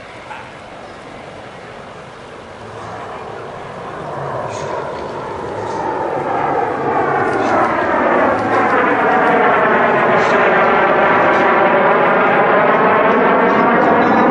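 The twin General Electric F404 turbofan engines of a CF-188 Hornet fighter jet, flying a slow pass with its gear down and nose high. The roar grows steadily louder from about four seconds in, with a sweeping, hollow whoosh as the jet closes in.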